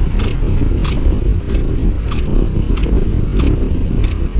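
Wind buffeting the action camera's microphone as a track bike rides at speed: a loud, steady low rush, with sharp clicks about every half second.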